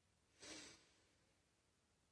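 One short breath through the nose, about half a second in, taken during a silent box-breathing exercise; otherwise near silence.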